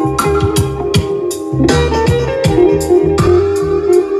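Music with a steady drum beat, a heavy bass line and guitar, played loud through a sound system's speakers.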